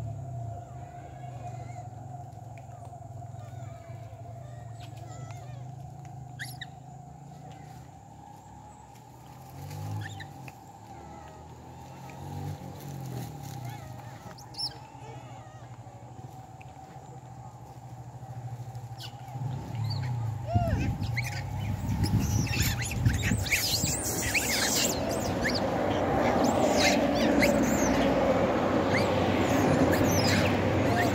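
Quiet outdoor ambience with a few short high chirps, then from about twenty seconds in a motor vehicle approaching along the road, growing steadily louder to the end.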